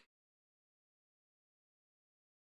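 Dead silence: the audio track drops out entirely just after the start.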